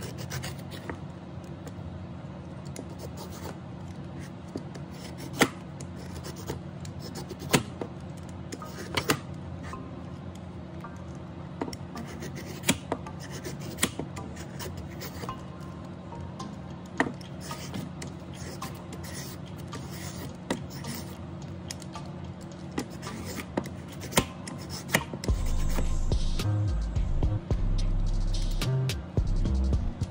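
Carrots being peeled into strips: repeated rasping scrapes and sharp clicks at an irregular pace, over soft background music that grows louder with a bass beat near the end.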